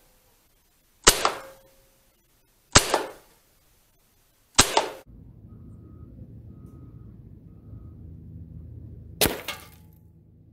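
Three sharp cracks from an Evanix Max Air .30-calibre PCP air rifle firing, a second and a half to two seconds apart, each dying away quickly. Then comes low steady background noise, and near the end a sharp crack with a short clatter after it as a pellet strikes a block of ice.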